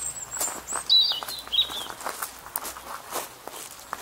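Footsteps on the ground, with a small bird giving a few high chirps in the first two seconds.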